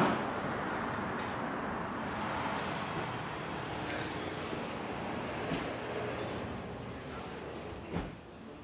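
Steady hiss and rumble of a car repair shop's background noise, easing off slightly toward the end.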